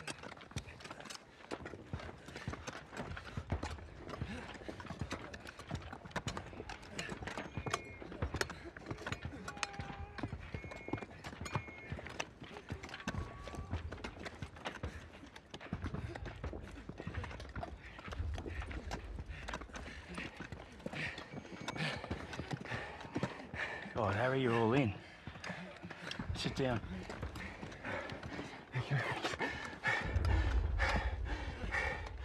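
Horse hooves clopping irregularly on hard ground, with a wavering whinny about three-quarters of the way through.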